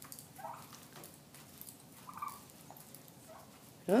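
Wild turkeys giving soft, short calls, about one every second.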